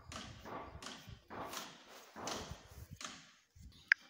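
A metal spoon scraping and smoothing wet cement mortar inside a small manhole chamber, in repeated strokes about two-thirds of a second apart. The strokes stop a little after three seconds in, and a single sharp click comes just before the end.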